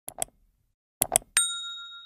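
Sound effects for a subscribe animation: two quick mouse-style clicks, then two more about a second in, then a single bright bell ding that rings on and fades for about a second.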